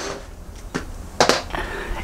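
Handling noise in a small room: a couple of brief clicks and knocks about a second in, over a low steady hum.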